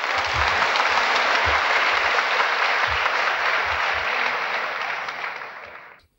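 Lecture-hall audience applauding steadily, fading away in the last second.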